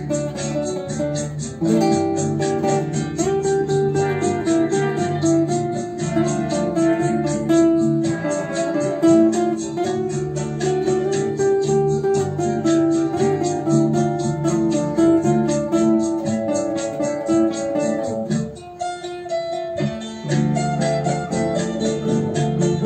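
Solo classical guitar playing a melody over a steady strummed accompaniment. The playing thins out and quietens briefly a few seconds before the end.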